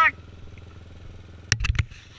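Dirt bike engine idling low and steady, with three sharp knocks close together about one and a half seconds in.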